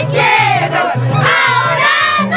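Several women singing loudly together in high voices over a jarana played on Andean harp and violin, the harp's bass notes stepping along in an even rhythm beneath them.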